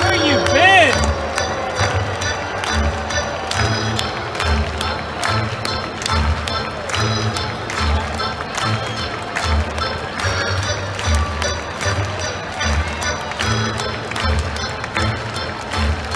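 Music played over a ballpark's public-address system, with a steady bass beat, amid the voices of the crowd in the stands.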